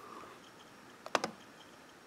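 A key pressed once, a quick sharp click with its release about a second in, to change the presentation slide, over faint room hiss.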